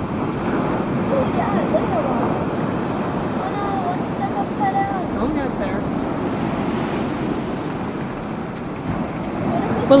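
Steady rush of ocean surf, with wind on the microphone and faint voices talking in the background.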